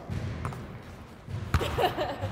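A basketball shot: one sharp, loud thud of the ball striking about a second and a half in, after a faint click, followed by a brief exclamation.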